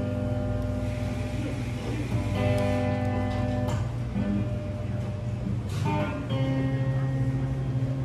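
Electric guitar playing a slow run of held, ringing chords, changing every second or two.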